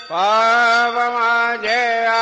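Devotional singing of a Marathi aarti: a singer holds one long syllable on a steady note with a slight waver, then moves to a new note near the end.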